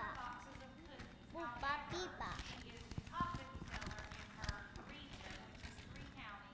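Quiet, indistinct talk between the woman and the children, away from the microphone, with a few soft knocks, the clearest about three seconds in and again about four and a half seconds in.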